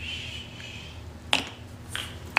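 A soft 'shh' shush for about a second, then two sharp clicks about half a second apart.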